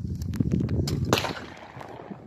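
Wind rumbling on the microphone, with a few small clicks and one sharper snap about a second in as a single-barrel break-action gun is handled.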